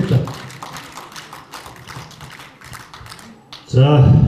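Audience applauding, a patter of many irregular hand claps that fades away over about three seconds.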